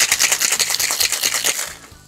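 Ice rattling hard and fast inside a cocktail shaker as a drink is shaken, a rapid even clatter of about ten strokes a second that stops about a second and a half in.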